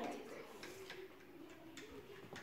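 Faint, irregular small clicks and taps of paintbrushes knocking against water jars and paint pots, over a low murmur of children's voices.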